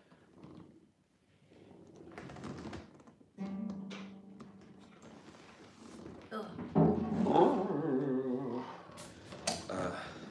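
Low wordless voices, then an acoustic guitar being lifted and handled, with a couple of sharp knocks against its body near the end and its strings starting to sound.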